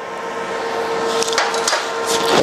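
Steady machine hum with a hiss underneath. A few light metallic ticks come in the second half as a welded steel plate is set down on a perforated steel welding table.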